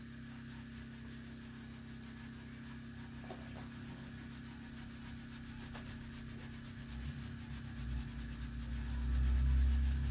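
Cloth rubbing over the textured painted metal body of a wood stove in a steady run of quick wiping strokes. A low rumble swells over the last few seconds.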